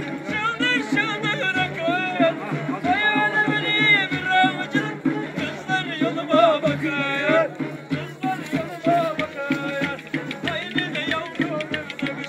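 A kemane, a small bowed folk fiddle, plays a quick, wavering dance melody. A davul bass drum keeps a steady beat under it.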